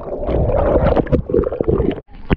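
Seawater churning with air bubbles, heard underwater through a strapped-on GoPro just after a jumper plunges in: a muffled, loud rushing and gurgling with many small pops over a low rumble.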